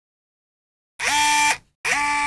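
Silence for about a second, then a short ident jingle: two identical held tones about a third of a second apart, each sliding briefly up into its pitch.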